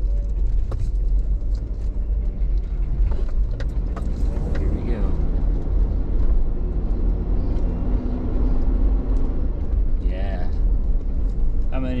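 A truck's engine and road noise heard from inside the cab: a steady low rumble as it drives along and turns onto a narrow side road.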